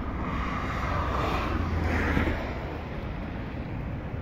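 Outdoor wind and road noise: a steady low rumble with wind on the microphone, swelling briefly about one to two seconds in as if a vehicle passes.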